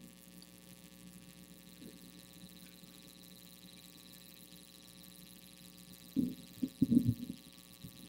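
Steady low electrical mains hum on the lecture recording's sound system, with a faint high whine over it. About six to seven seconds in, a few short, muffled low thuds.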